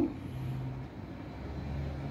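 Low background rumble with a faint, steady low hum that fades in and out.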